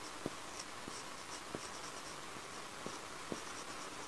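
Marker pen squeaking faintly across a whiteboard in short quick strokes as words are written, with a few light taps of the tip.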